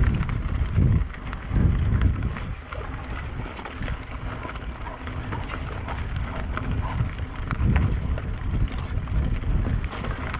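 Mountain bike ridden over a dirt trail, its tyres rolling with a stream of small rattles and clicks from the bike, under uneven gusts of wind buffeting the microphone.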